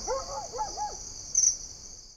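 Night-time sound ident: crickets chirring steadily at a high pitch, with a quick run of about six short rising-and-falling hoot-like calls in the first second and a louder swell of the chirring about one and a half seconds in.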